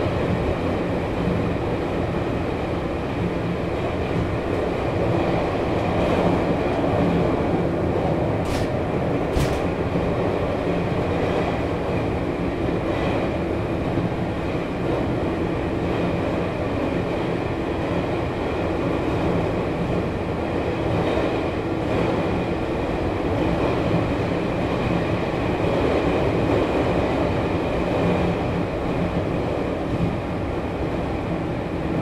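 Running noise of a JR 413 series electric multiple unit, heard from inside its MT54-motored car MoHa 412-7: a steady rumble of wheels, motors and car body on the rails. Two brief high ticks come about a third of the way in.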